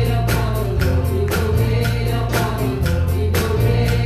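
Live gospel worship song: a small group of singers on microphones singing together over keyboard accompaniment, with a steady beat.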